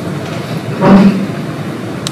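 Steady low background noise, with one short voiced sound from a person, a brief hum or sob, about a second in.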